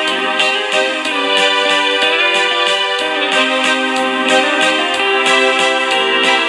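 Live instrumental music from a keyboard-and-electric-guitar duo: a Roland G-1000 arranger keyboard playing sustained electric-piano and organ-like chords over a steady beat about two to the second, with the electric guitar playing along.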